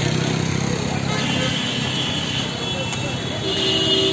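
Road traffic: a motor vehicle engine running with a steady low hum that fades about halfway through, over continuous street noise.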